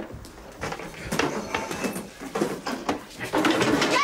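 Two men fighting on a floor among chairs and tables, heard as irregular scuffles and knocks mixed with strained grunts and heavy breathing.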